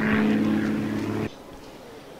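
A steady, low engine-like drone made of several even tones, which cuts off suddenly a little over a second in.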